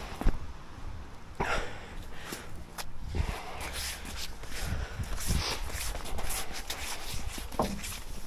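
Footsteps on cobblestone paving at a walking pace: irregular steps and scuffs.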